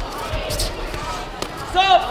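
A kickboxing exchange: a few dull thuds of gloved strikes and feet on the mat, with a short, loud shout near the end over the murmur of a crowded sports hall.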